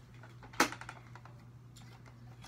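Hard plastic Nerf blaster parts being handled: one sharp click about half a second in, then a few faint small clicks, as a folding grip is fitted onto a Nerf Stryfe.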